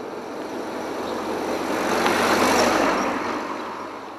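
Street traffic: a vehicle driving past, its noise swelling to a peak a little past halfway and then fading.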